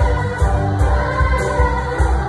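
A large girls' choir singing in unison over music with a steady bass beat.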